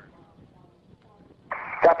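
Space Shuttle air-to-ground radio: a short lull with only faint background noise, then about one and a half seconds in the crew's voice comes over the radio acknowledging Houston's "negative return" abort-mode call.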